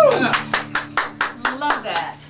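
A small group of people clapping in a small room as an acoustic song ends: separate, uneven claps, a few a second. A voice calls out with a rising-then-falling pitch at the start, and a few words are spoken near the end.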